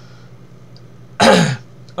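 A man clears his throat once, a short harsh burst about a second in, over a faint steady low hum.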